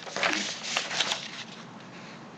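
A few soft clicks with a faint murmur in the first second, then low steady room hiss.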